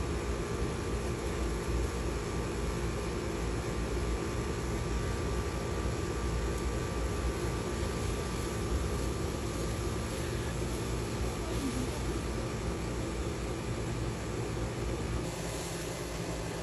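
Steady low rumbling background noise with an even hiss and a faint steady hum, unchanging throughout.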